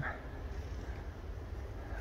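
Quiet outdoor background with a steady low rumble and no distinct events.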